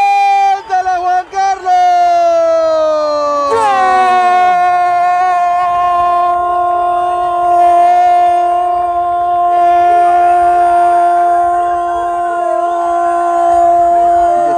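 A football commentator's drawn-out goal cry: a few quick shouted 'gol's, then one long 'gooool' held at a steady high pitch for about ten seconds, the shout for a goal just scored.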